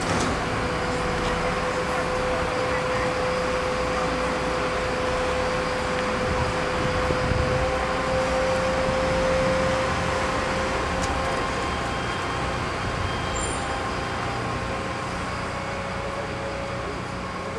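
Mobile crane's engine and hydraulics running steadily under load while hoisting a suspended chiller unit, with a steady whine above the engine noise.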